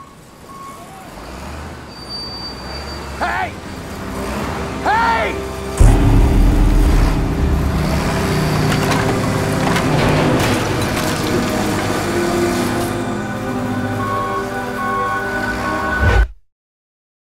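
Heavy demolition machine tearing down a wooden building: a low machine rumble builds, then a sudden loud crash of collapsing timber about six seconds in, followed by continuing rumble and crunching of debris to the end.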